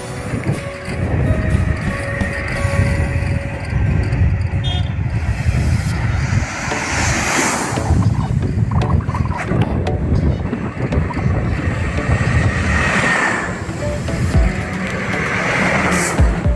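Wind rumbling on the microphone while riding a bicycle along a highway, with a vehicle passing about halfway through and another near the end.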